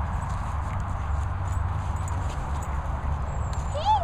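Steady low rumble of wind buffeting the microphone. Near the end comes a short call that rises and falls in pitch.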